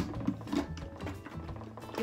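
Background music, with a few light clicks and knocks of a glass blender jar being fitted and twisted onto an Oster blender's base.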